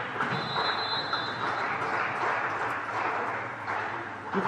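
Referee's whistle blown once for about a second and a half, a thin steady tone signalling the serve in a volleyball rally, over steady crowd noise in the sports hall.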